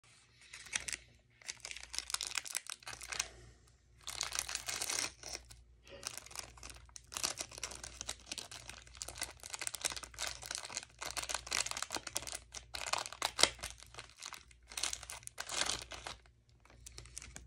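Yellow Paqui One Chip Challenge wrapper being torn open and crinkled by hand, in repeated bursts of crackling with brief pauses between them.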